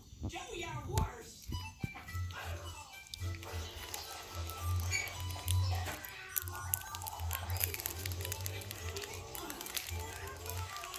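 A television programme playing in the room, with voices and music, over scattered clicks and rustling.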